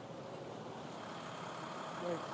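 Steady hum of street traffic.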